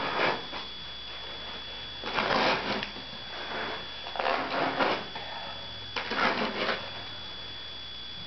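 A knife sawing through carpet pile and backing in four rasping strokes about two seconds apart, cutting out a paint-stained patch of carpet.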